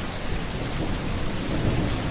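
Steady rain falling, with a low rumble of thunder underneath.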